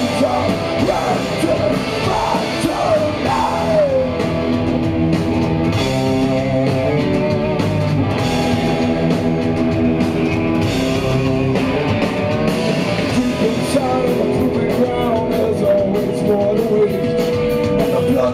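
Punk rock band playing live: distorted electric guitars, drums with crashing cymbals, and a male lead vocal singing over them. It is loud and steady.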